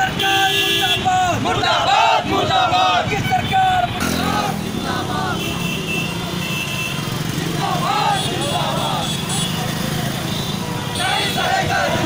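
A group of men shouting protest slogans together. About four seconds in the sound changes to road traffic, with motor scooter and car engines running close by, and the chanting comes back in short bursts.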